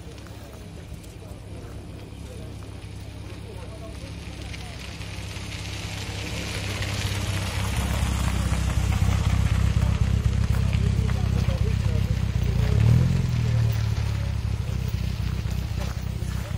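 MGA roadster's four-cylinder engine running at low speed as the car drives up and passes close by, growing louder over the first half. A brief rise and fall in engine pitch near the end, then a steady idle-like note.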